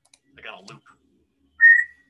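A person whistling one short, steady high note near the end, after a brief murmur of voice.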